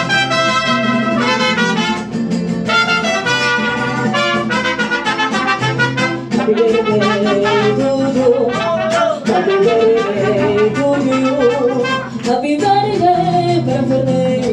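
Live mariachi band: two trumpets playing a melody over strummed guitars. From about six seconds in, a voice sings with vibrato over the band.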